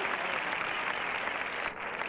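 Large stadium crowd applauding and cheering, a steady noise without any single voice standing out.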